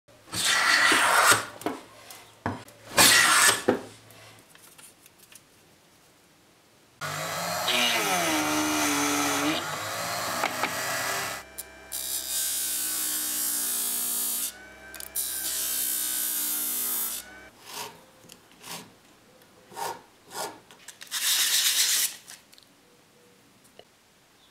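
Short scraping strokes on wood, then a small power tool, a sander, running for about ten seconds while wooden organ-key pieces are worked against it; its pitch dips briefly as the wood is pressed on. More short scraping strokes on wood follow near the end.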